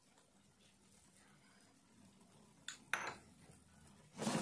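Near silence with a faint hum, then two short clinks close together about three seconds in, the second louder: a kitchen utensil knocking against cookware.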